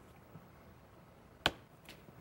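Low studio room tone broken by a single sharp click about one and a half seconds in, with a much fainter click near the end.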